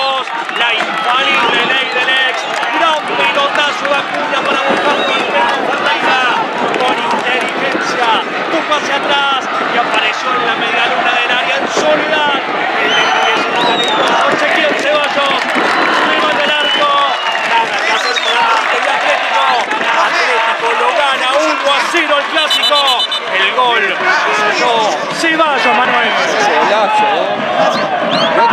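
Many overlapping voices of spectators and players shouting and cheering, with no single voice standing out, celebrating a goal.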